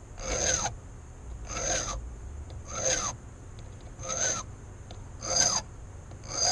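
Hand file rasping across a brass key blank in five slow, even strokes about a second and a quarter apart, each stroke rising and falling in pitch. The file is deepening two cuts of a key being impressioned, taking them down toward the target depth.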